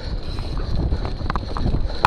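Mountain bike descending a rocky trail at speed: wind buffeting the microphone in a steady low rumble, with tyres running over loose stone and the bike rattling in many short, sharp clicks.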